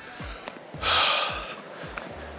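Background music with a short breathy puff of noise about a second in.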